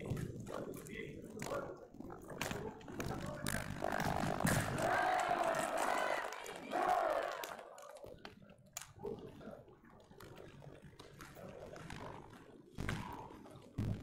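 Indistinct voices echoing in a large sports hall, loudest between about four and seven and a half seconds in, then quieter, with a couple of sharp knocks near the end.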